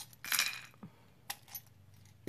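Small charms and stones dropping into a wooden bowl: a short clatter as they land, then three single clicks as the last pieces fall and settle.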